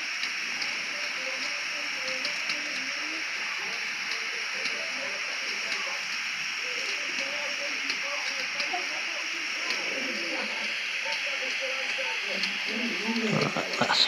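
Steady hiss of the flame from a butane soldering iron's blowtorch head, held on a thread-locked steel bolt to heat it and soften the thread lock.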